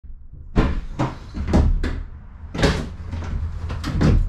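About six sharp knocks and clunks, irregularly spaced, from the metal body and doors of an empty cargo van being handled, over a steady low rumble.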